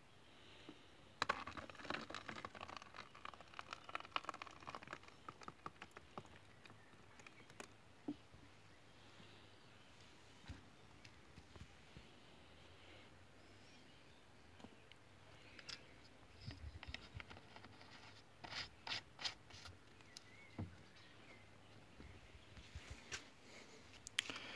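Faint handling noises of a plastic bottle and a plastic tub: light clicks, crinkles and taps, a dense run in the first several seconds and another cluster a few seconds past the middle.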